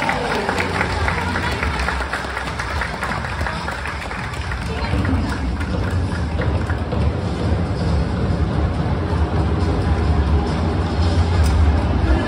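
Music played over a stadium public-address system, heard from the stands with crowd chatter around it. The bass grows heavier about five seconds in.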